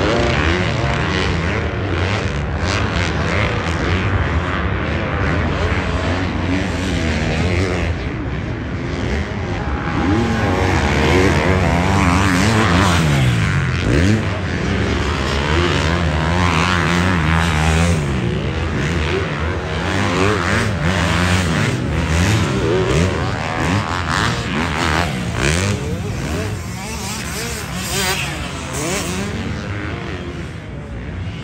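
Several motocross dirt bikes racing around the track, their engines revving up and down as they accelerate through the sections, with overlapping pitches from more than one bike at a time.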